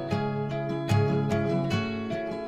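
Background music on acoustic guitar, with plucked notes and strummed chords in a steady rhythm.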